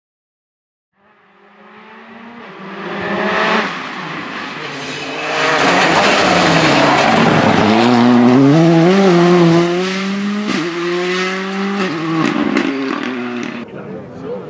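Rally2 cars' turbocharged four-cylinder engines at full throttle on a tarmac stage, starting about a second in and building as a car approaches. The engine pitch climbs and falls with gear changes, with sudden drops at shifts, and with tyre noise over it.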